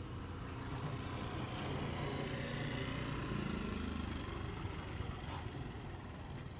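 A motor vehicle's engine rumble, swelling through the middle and fading near the end, as of a vehicle passing by.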